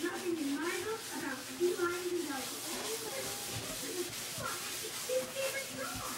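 A sponge scrubbing baking soda around a stainless steel sink basin in repeated rubbing strokes, with a voice in the background.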